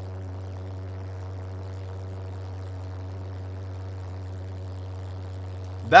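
A steady low drone with a row of even overtones, holding one pitch throughout: the jet engines of a home-built go-kart running.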